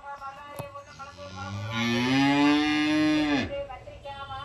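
One long, loud animal call lasting about two and a half seconds. It rises in pitch, holds, then drops sharply and cuts off.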